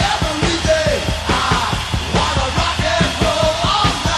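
Rock song with a fast, driving drum beat and loud, near-shouted sung vocals.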